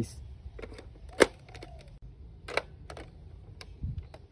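Hard plastic parts of a toy machine gun clicking and knocking as its detachable stock is handled and fitted on: a few separate clicks, the sharpest about a second in, and a dull thump near the end.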